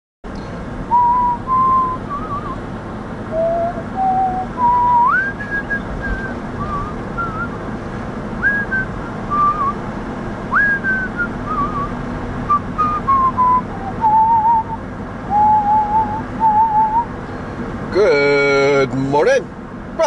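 A person whistling a slow tune, one note at a time with small slides between pitches, over the steady road and engine noise inside a moving car's cabin.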